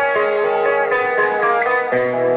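Live rock band playing a slow power ballad led by electric guitar, with a hit on the beat about once a second.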